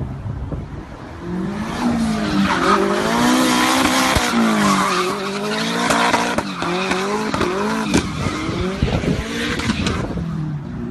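A car drifting through a bend: its engine revs rise and fall while the tyres squeal as it slides sideways.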